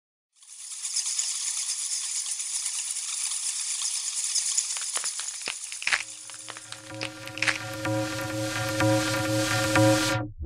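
Intro of an electronic dance track: a hissing, crackling noise texture with scattered clicks, then from about six seconds a held synth chord that builds toward the drop.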